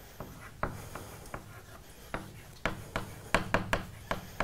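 Chalk writing on a blackboard: a run of short taps and scratches, sparse at first and quicker in the second half.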